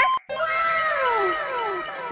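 Sound effect: a long pitched glide falling steadily over about a second and a half, several tones sliding down together.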